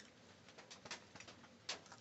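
Near silence: faint room tone with a few soft clicks, and a brief louder sound near the end.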